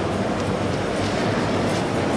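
Steady background din of a busy, echoing exhibition hall: a crowd murmur and general hall noise over a constant low hum.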